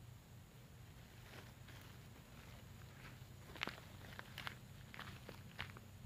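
Faint footsteps crunching on dry leaf litter and dead palm fronds: a scatter of short crackles that begins about a second and a half in and grows louder in the second half.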